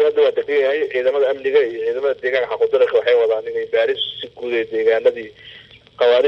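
Speech only: a person talking steadily, with no other sound standing out.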